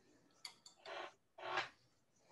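Two light clicks, then two short scratchy strokes of a paintbrush working paint onto watercolor paper.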